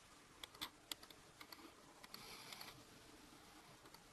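Faint clicking at a computer: a few sharp clicks in the first second, then a short soft hiss about two seconds in, over quiet room tone.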